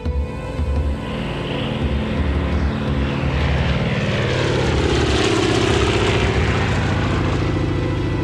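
Twin-engine propeller airplane taking off at full power, with a low, even pulsing. The sound builds over the first five seconds as the plane rolls and climbs away, then holds steady.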